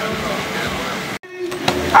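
Outdoor crowd chatter that cuts off abruptly about halfway through, then a single short thud of a football being kicked in a penalty near the end.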